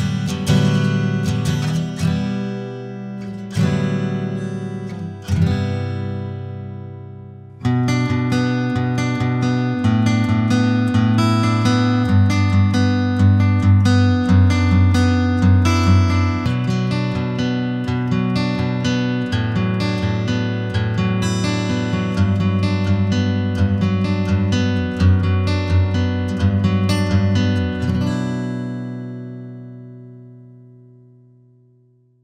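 J-45 acoustic guitar being played: three chords struck and left to ring out, then after about seven and a half seconds a busy, steady run of notes and chords, ending on a chord that rings and fades near the end.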